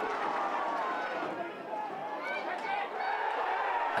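Football stadium crowd noise: a steady hum of many voices, with a few faint shouts rising out of it near the middle.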